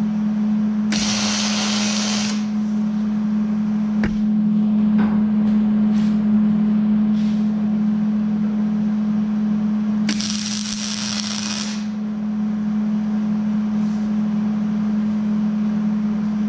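Wire-feed welder arcing on steel in two short welds, each a burst of about one and a half seconds, the second some nine seconds after the first, over a steady low hum; a few light clicks fall between them.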